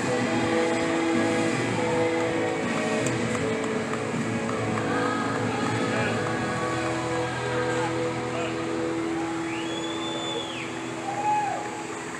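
Amusement-park ambience: held notes of background music over a steady wash of crowd voices, with a couple of short rising-and-falling cries near the end.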